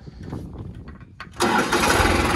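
New Holland 5620 tractor's three-cylinder turbocharged, intercooled diesel engine being started. It catches about one and a half seconds in and runs steadily.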